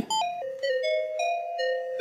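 Sliced audio loop played back by a software slicer: a run of bell-like chime notes stepping down in pitch, then back up and down again. Its pitch is being shifted independently of the playback speed.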